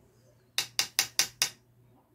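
Five quick, sharp taps in a row, about five a second, typical of a makeup brush being tapped against the edge of an eyeshadow palette to knock off excess powder.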